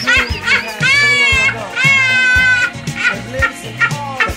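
A woman laughing hard in high-pitched, squealing bursts, the longest about a second and two seconds in, over steady background music.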